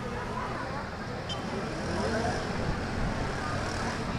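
Steady street traffic noise with the chatter of a large crowd mixed in.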